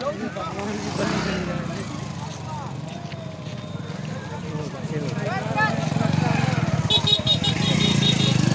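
Motorcycle engine running close by, growing louder over the second half, under scattered crowd voices. A quick run of high beeps sounds about a second before the end.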